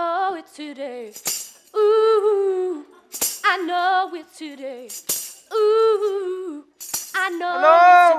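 A woman singing alone, unaccompanied, in short held phrases of about a second each with vibrato, separated by quick breaths.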